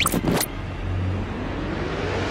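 Electronic title-sequence sound effects: a quick whoosh at the start, then a steady low rumble under a pitched sweep that begins rising about halfway through.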